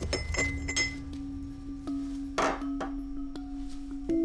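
Pestle clinking and grinding against a mortar full of dried root pieces: a few quick clinks in the first second and a single scrape about halfway through. A low, held music note comes in about half a second in and runs underneath.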